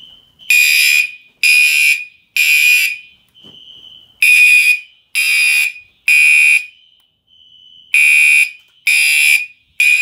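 Fire alarm horns sounding the temporal-three evacuation pattern: three loud, high-pitched blasts, then a pause, repeated three times. A fainter steady tone from another alarm device sounds in some of the pauses, out of step with the horns.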